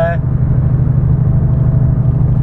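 Steady low drone of a lorry's engine and tyre noise on the motorway, heard from inside the cab while cruising.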